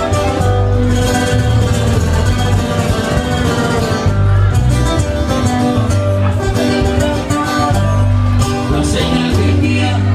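Live corrido band playing an instrumental passage between verses: tuba bass line under acoustic guitars, with trumpet and timbales. A male singer comes back in near the end.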